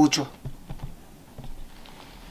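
A man's speaking voice ends a phrase just after the start, followed by a pause of faint room tone with light, scattered clicks.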